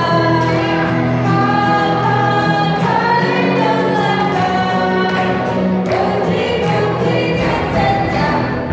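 A group of young children singing a Christian song together, accompanied by an acoustic guitar.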